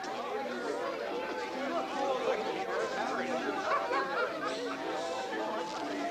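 Crowd of people chattering together, many voices at once, with short held musical notes sounding underneath.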